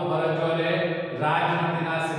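A man lecturing in a continuous voice at a fairly even pitch.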